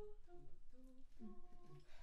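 A single voice quietly humming several short notes of a carol tune, giving the starting pitch to a group of carolers.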